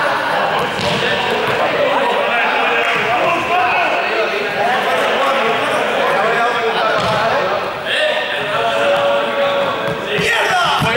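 A ball bouncing and being struck during a four-square bounce game on a sports-hall floor, with several people talking and calling out over it in the echoing hall.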